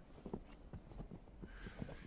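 Faint, irregular crunching footsteps in snow, a string of short soft knocks several times a second.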